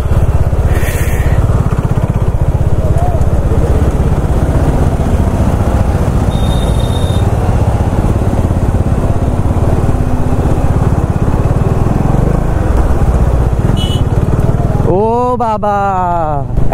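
Bajaj Dominar 400's single-cylinder engine running at low speed through stop-and-go traffic, heard from the rider's seat as a steady low rumble. A short high tone sounds about six seconds in.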